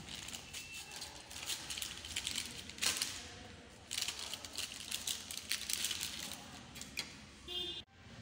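Pastry wrappers crinkled and pulled open by hand: a dense run of crackles, with one sharper tear about three seconds in.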